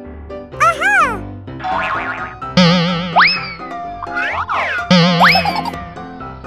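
Cartoon sound effects over children's background music with short repeated notes: a quick whistle that rises and falls about a second in, then sliding-whistle glides that shoot upward at about two and a half and five seconds, with warbling, wobbling tones between them.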